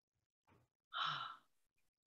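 A person's short sigh about a second in, with a fainter breath just before it.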